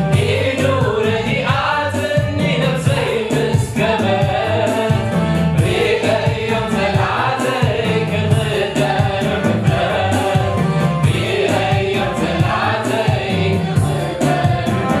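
A male lead singer and a small mixed choir singing a Tigrinya gospel worship song through microphones, over instrumental backing with a steady bass and beat.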